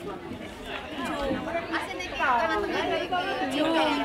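Overlapping chatter of a group of people talking at once, growing louder about halfway through.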